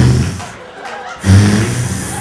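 A man making a low, buzzing mouth sound effect right into a hand-held microphone, mimicking a life raft inflating, in two bursts, the second and louder one starting about a second and a half in.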